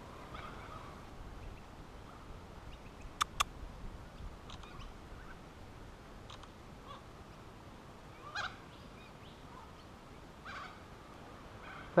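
Quiet bush with a few faint, short bird calls scattered through. About three seconds in, two sharp clicks a fifth of a second apart: a phone camera's shutter sound as photos are taken.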